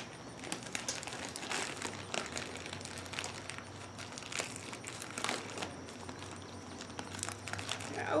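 Plastic bag of birdseed crinkling and rustling in irregular bursts as it is handled and opened by hand.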